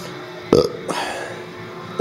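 A short, rough throat sound from a man about half a second in, followed by a brief breathy rasp, over faint steady background music.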